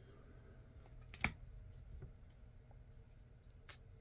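Trading cards being handled and shuffled, card from front to back through a pack, giving two faint sharp clicks, one about a second in and a smaller one near the end.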